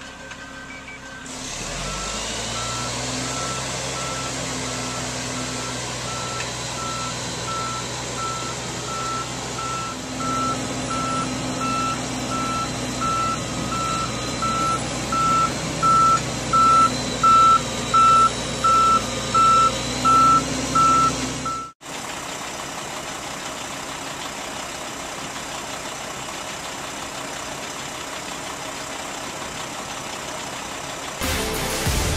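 Cotton module truck backing up, its reversing alarm beeping about twice a second over the steady running of the truck's engine. The beeping stops abruptly about 22 seconds in, leaving the engine running steadily.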